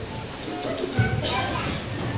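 A large group of young children's voices in a pause between sung lines: a jumble of chatter and stray short sung notes, with no clear line being sung together.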